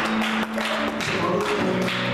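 Live music with a steady drumbeat, strikes about twice a second, over sustained held chords.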